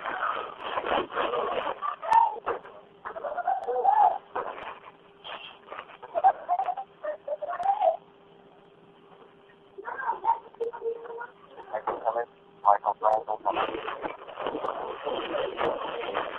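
Raised, unintelligible voices of a heated argument heard over a telephone line, with a faint steady line hum; the voices drop out for a couple of seconds about eight seconds in, then start again.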